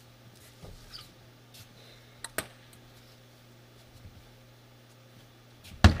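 Table tennis ball ticks over a steady low hum: two sharp ticks close together about two and a half seconds in, then near the end a louder sharp hit as the serve is struck and the rally starts.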